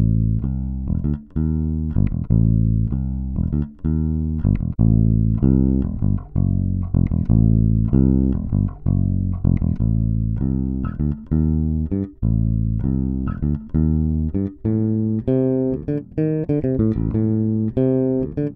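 Electric bass guitar recorded direct, playing a line of plucked notes, heard in turn through a dbx DB12 active DI box and a Radial Pro DI passive DI box for comparison. About fifteen seconds in, the playing turns to faster, brighter notes.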